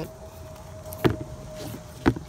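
A single sharp knock about a second in as the sneakers are handled, over a faint steady hum.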